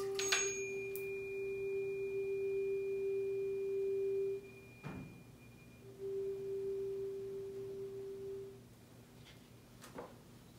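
Tuning fork held over a water-filled resonance tube, ringing one steady pure tone made loud by the air column resonating at the fork's frequency. The tone cuts off about four seconds in, a single knock follows, and the tone comes back for about two and a half seconds before fading out.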